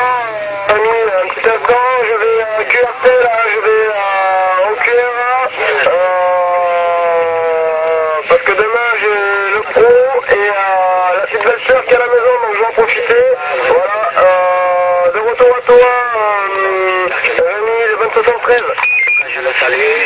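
A voice coming through a CB radio receiver, thin and band-limited, talking without pause, with speech too garbled to follow.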